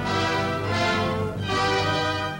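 Orchestral music playing sustained chords, moving to a new chord about a second and a half in.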